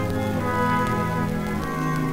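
Orchestra playing a short instrumental fill of held chords between sung phrases, the chords changing a couple of times, from a 1940 78 rpm record.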